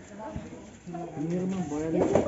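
Indistinct voices in the background, without clear words, starting about a second in and growing louder toward the end.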